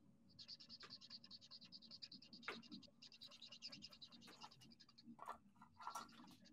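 Faint, quick strokes of a felt-tip marker scratching across cardstock while colouring in a stamped image, with brief pauses and one sharper tick about two and a half seconds in.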